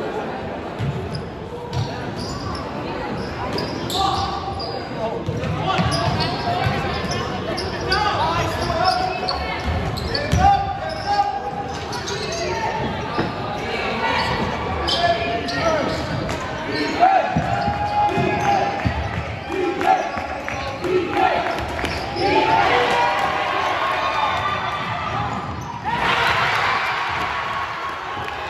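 Basketball game in a gym: the ball bouncing on the hardwood floor, with players and spectators calling out, all echoing in the hall. Near the end the background noise swells louder.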